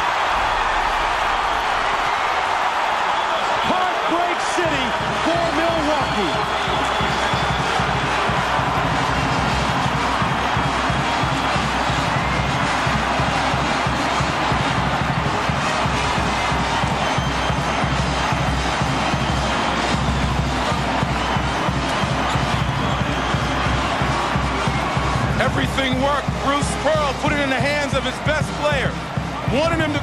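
Arena crowd in a loud, steady roar at the final buzzer of a one-point game, with band music with a beat joining in underneath about four seconds in. Voices come through near the end.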